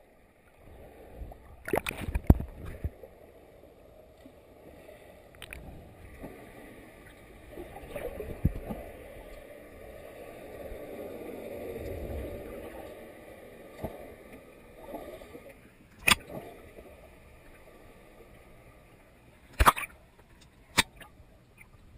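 Muffled underwater sound heard through a waterproof camera housing: a low rush of moving water that swells in the middle, with a few sharp knocks, a cluster about two seconds in, one late on and another just before the camera breaks the surface.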